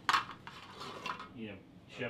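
Metal cooking utensils clinking against cookware at a disc cooker: one sharp clink at the start that rings briefly, then a few softer knocks.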